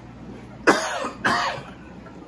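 A man coughing twice, about half a second apart.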